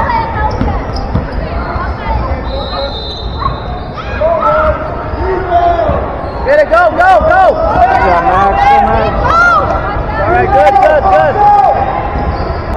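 A basketball bouncing on a hardwood gym floor, with sneakers squeaking on the court; the squeaks come thick and fast from about halfway through.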